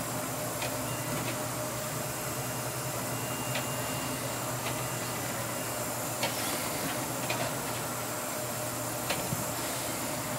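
Steady drone and hiss of a pilot boat's engines heard inside the wheelhouse, with a low hum and a few short, sharp ticks scattered through it.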